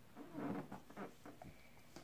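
Faint handling of a plastic cosmetic jar and its screw-on lid, with a few soft clicks. A low, soft voice sounds in the first half.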